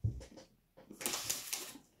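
A low bump, then the crinkling rustle of a chocolate bar's wrapper being handled, loudest for about a second from a second in.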